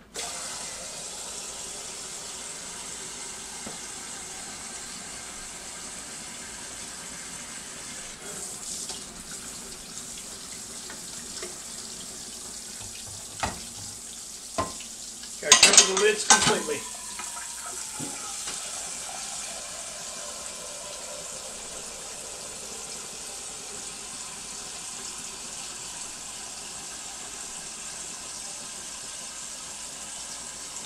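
Kitchen tap running steadily, filling water to top up a water-bath canner. A few clicks and a brief loud clatter of pots and dishes come about halfway through.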